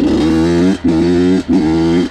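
Honda CR85 two-stroke dirt bike engine being revved in three short bursts, each rising slightly in pitch, with brief drops between them as the throttle comes off.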